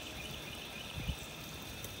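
Garden hose spray nozzle running, a steady hiss of fine water spray falling on the soil of a raised bed, with a soft low thump about a second in.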